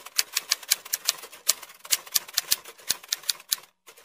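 Typewriter key-clicking sound effect: a rapid, uneven run of sharp clicks, about seven a second, with a short break just before the end.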